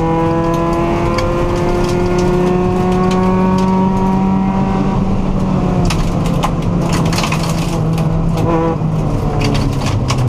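Subaru WRX rally car's engine heard from inside the cabin, pulling hard with its pitch slowly rising for about five seconds, then levelling off and easing. Gravel and stones clatter against the underside in the second half.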